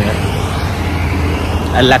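Road traffic passing close by: a steady low rumble of cars on a city road, with a few spoken words near the end.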